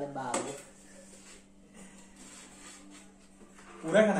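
A voice at the very start, then a few seconds of quiet room tone with a faint steady hum. A loud burst of voice comes right at the end.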